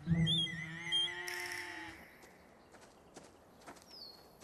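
A cow mooing once, a drawn-out low call about a second and a half long, with a wavering high twittering over it. A few light clicks follow in the quiet that comes after.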